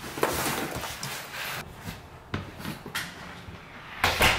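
Rustling of bags and clothing with several soft knocks as gym bags are picked up and carried.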